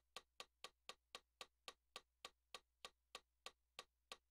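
Faint, evenly spaced clicks from a digital keyboard's built-in metronome. They start at about four a second and slow to about three a second as the tempo is turned down.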